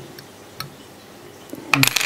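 Faint light metallic ticks from a fly-tying whip finish tool being worked around the thread at the vise, ending with a quick cluster of sharper clicks near the end as the tool comes off.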